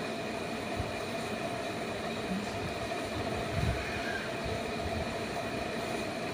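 Steady background hum with a few faint soft knocks, as a pen writes a letter on a sheet of notebook paper.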